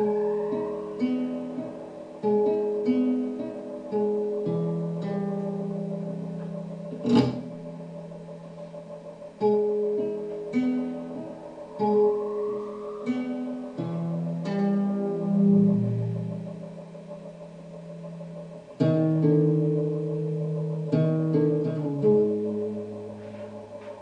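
Live dark ambient ritual music: low plucked string notes that ring and fade, over a steady drone. A single sharp hit comes about seven seconds in, and a rising swell comes twice.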